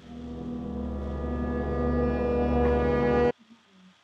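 A low, steady horn-like drone with many overtones, swelling louder for about three seconds and then cutting off suddenly, laid over a title card as a transition sound.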